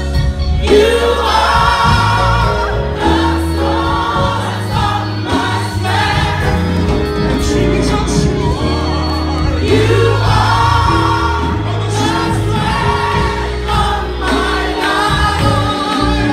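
Gospel choir singing into microphones over keyboard accompaniment, the voices holding long wavering notes. A new sung phrase swells up about half a second in and again near ten seconds.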